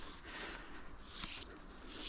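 Faint rustling of a cord being pulled round a mossy tree trunk as a clove hitch, its securing half hitch removed, slips loose, with a brief slightly louder hiss about a second in.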